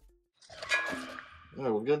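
A hand tool clanking against the front driveshaft's flange bolts: one short metallic clank with a brief ring, about half a second in. A man then says "Good".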